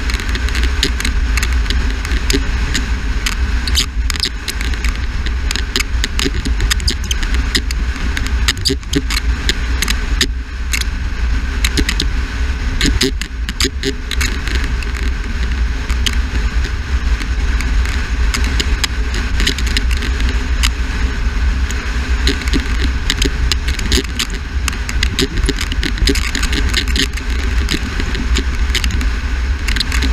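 Wind buffeting the microphone of a camera mounted outside a moving car: a heavy low rumble with frequent crackles and rattles, over the car's own driving noise.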